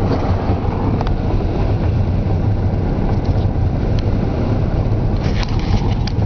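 Steady road noise of a car being driven, heard from inside the cabin: a low engine and tyre rumble, with a few faint clicks.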